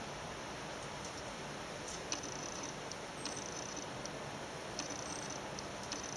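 Quiet handling of wax sheets in a tray of water: a few faint clicks and several short, high-pitched squeaks over a steady low background.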